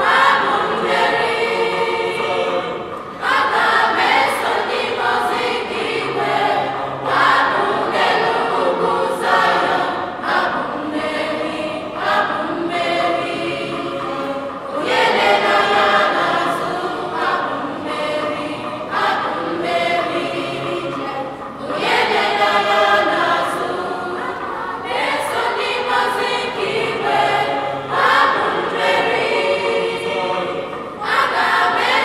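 A mixed school choir of boys and girls singing an Igbo song in several voice parts, in continuous phrases with short breaks between them.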